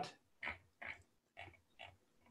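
Four faint, short grunt-like voice sounds, about half a second apart.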